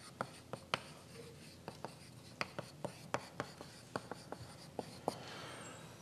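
Chalk writing on a blackboard: a run of sharp taps and light scrapes as a word is written out.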